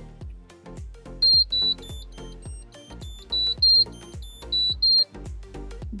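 Evenflo SensorSafe car seat alarm beeping in the car after the engine is switched off: three pairs of short, high beeps, the reminder that the seat is still buckled. Background music with a steady beat plays underneath.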